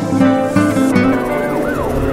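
Instrumental music from a Persian rap track: plucked guitar-like notes over held tones. In the second half a siren-like sound effect rises and falls in pitch several times.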